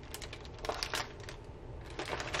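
Faint light clicks and ticks of a plastic-wrapped gel neck ice pack being handled, a handful of them, mostly in the first second.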